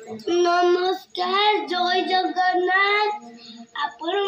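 A child singing a tune in long held notes, breaking off briefly about a second in, then carrying on.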